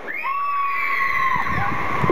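Children screaming in long, high, held shrieks over a din of crowd noise.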